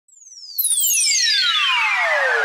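Synthesized sound effect for a logo sting: a high tone glides steadily downward. About half a second in it turns loud, as more falling tones and a rushing noise join it.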